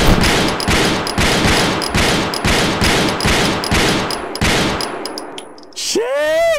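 Automatic gunfire: a long, loud burst of rapid shots, about four to five a second, thinning out and fading near the end.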